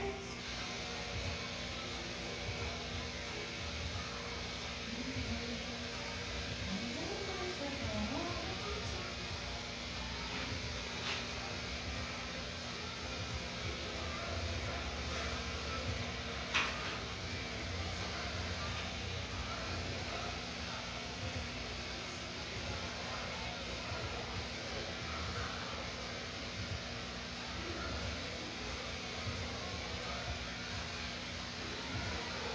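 Cordless electric pet clippers running with a steady hum while trimming a dog's leg and foot fur. A few short rising squeaks come in the first ten seconds, and there is a sharp click about sixteen seconds in.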